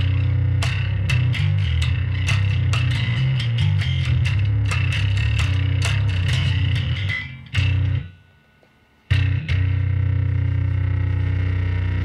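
Electric bass played through a germanium bass fuzz pedal, with the fuzz blended about halfway into the clean bass: a run of low picked notes with a gritty, distorted edge. The playing stops briefly about eight seconds in, then a held note rings on.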